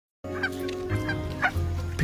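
Several short animal calls, the last one rising in pitch, over sustained low background music.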